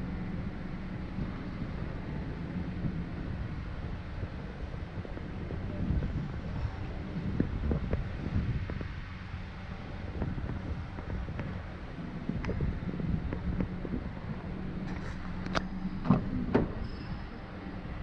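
Steady low hum with handling noises. Near the end come a few sharp clicks and knocks as a car's rear door is unlatched and pulled open.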